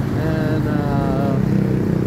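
Street traffic with motorcycle engines running, a steady low rumble.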